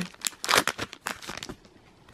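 Foil wrapper of a Pokémon trading-card booster pack crinkling as the stack of cards is slid out of it, a quick run of irregular crackles that dies away after about a second and a half.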